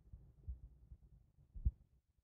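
Faint low hum with two soft low thumps, a small one about half a second in and a louder one near the end.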